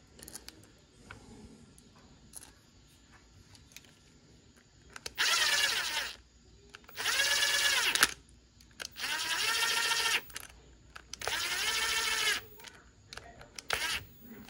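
Bosch cordless impact driver running screws into a small-engine carburetor's cover plate: four short runs of about a second each, the motor whine rising as it spins up and falling as it stops, without hammering. Light clicks of small parts being handled come before the first run.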